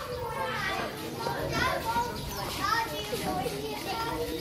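A crowd of schoolchildren chattering, many high voices overlapping one another.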